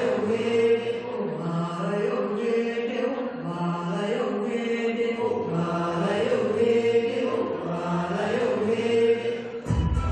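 A group of voices singing a chant-like song, a short phrase repeated over and over every couple of seconds. Just before the end it cuts to different music with a heavy bass.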